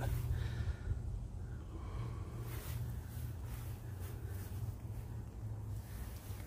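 Steady low background hum with faint rustling handling noise as the camera is carried along the side of the truck.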